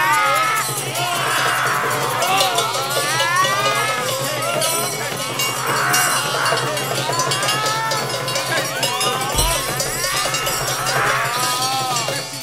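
Free-jazz big band in dense collective improvisation: many overlapping sliding, swooping lines from horns and the players' voices. Under them run a steady low drone and a clatter of percussion.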